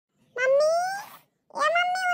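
Two drawn-out, high-pitched vocal calls. The first rises steadily in pitch, and the second starts about a second and a half in and is held level.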